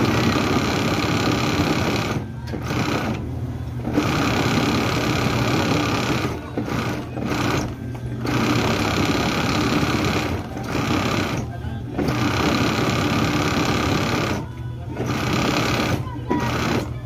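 Industrial sewing machine stitching at speed in runs of one to three seconds, with about eight short stops between runs.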